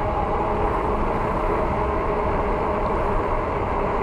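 Steady wind noise rushing over the microphone, with road hum from a fat-tire electric bike rolling on asphalt at about 21 mph.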